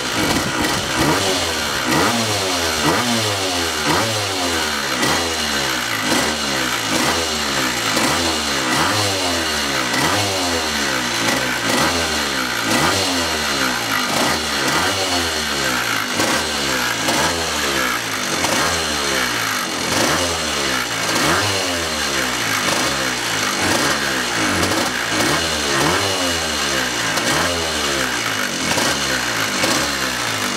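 Villiers two-stroke single-cylinder engine of a 210 National gearbox kart running out of gear, blipped again and again so its pitch climbs and falls about once a second. It has just started first time and is running well.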